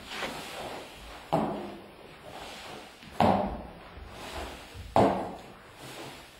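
Three sharp knocks, each a little under two seconds apart, each followed by a short ringing decay.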